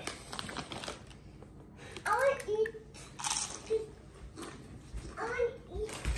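Quiet crunching and chewing of spicy tortilla chips, broken by a few short murmured vocal sounds, a child's among them, about two, three and five seconds in.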